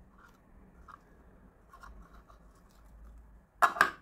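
Faint crinkling and rustling of curled pencil wood shavings as they are picked by hand out of a small clear plastic pencil sharpener. A short, louder sound comes near the end.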